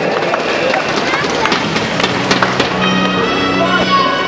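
Noise from the arena crowd, with voices and scattered claps. Music starts with steady sustained notes about three seconds in.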